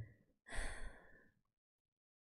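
A woman's breathy sigh: one soft exhale starting about half a second in and fading out within a second.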